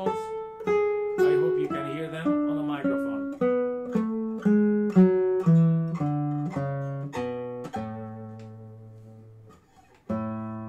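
Cedar-top, rosewood-bodied Milagro R1 nylon-string classical guitar played fingerstyle. It plays a run of single notes about two a second, stepping down in pitch. Near the end it settles on a low bass note that rings out and fades.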